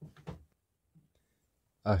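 Mostly near silence: a brief faint sound in the first half-second, then a man's voice starting to talk near the end.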